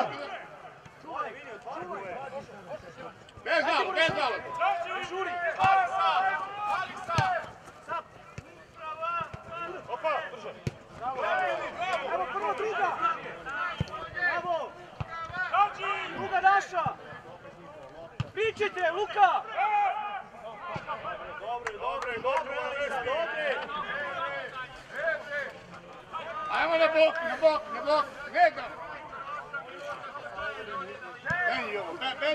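Men's voices shouting and calling out across an open football pitch during play, in bursts with short lulls, with a few sharp knocks of the ball being kicked.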